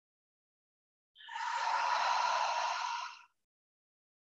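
A person's long audible breath through the mouth, lasting about two seconds and starting about a second in, taken as a slow deep breath during a guided yoga breathing cue.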